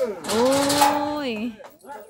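A woman's long, drawn-out cry of "โอ้ย" ("oy!"), held on one steady pitch for about a second and then falling away.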